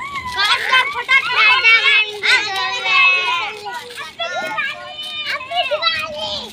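Several children's high-pitched voices shouting and calling out over one another as they play.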